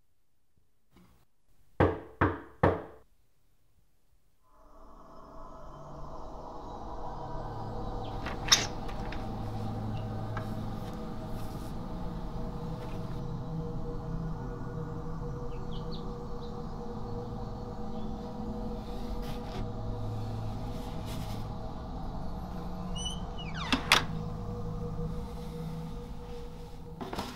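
Three quick knocks on a door, about two seconds in. After a short pause, a low, droning music bed with steady held tones fades in and carries on, broken by a sharp click about eight seconds in and another near the end.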